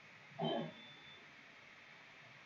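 Quiet room tone broken once, about half a second in, by a brief low voiced sound, like a short murmur.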